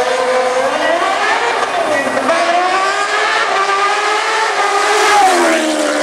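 Drag-racing motorcycle engine accelerating hard down the strip, its pitch climbing through each gear and dropping at the upshifts, about two seconds in and again near the end.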